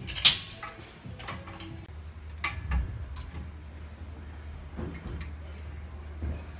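Scattered clicks and knocks from a cable fly machine as its handles, cables and weight stack move through chest fly reps, the sharpest click about a quarter second in and a cluster a little past halfway. A low steady hum underneath.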